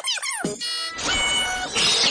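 A cartoon soundtrack played at four times speed. High, squeaky voices slide quickly in pitch, then give way to steady held tones over music, with a brighter noisy burst near the end.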